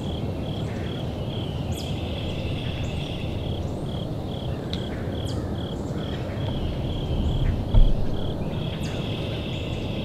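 Evening insects, crickets or katydids, chirping in an even pulse about three times a second. A continuous high trill joins in twice over a low background noise. A single dull thump comes near the eight-second mark.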